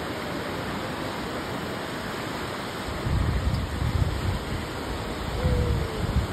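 Ocean surf washing onto the beach, a steady rushing hiss. Low rumbling gusts, typical of wind on the microphone, come in about three seconds in and again near the end.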